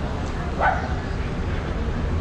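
A dog barks once, about two thirds of a second in, over a steady low rumble of street noise.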